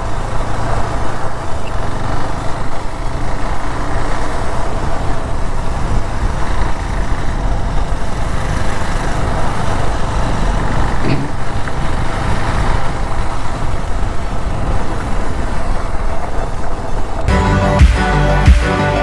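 A KTM Duke's single-cylinder engine cruising steadily at low road speed, mixed with wind rush on the mic. Near the end, background music with a beat comes in.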